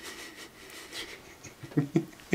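Mostly quiet room tone; near the end a man starts to laugh in short bursts.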